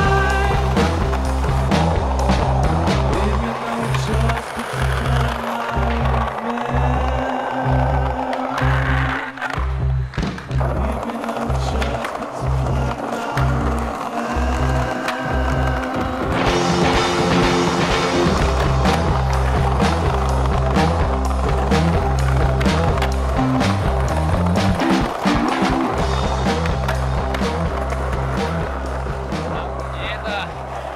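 Rock backing music with a steady, rhythmic bass line and drums. The bass drops out briefly about ten seconds in.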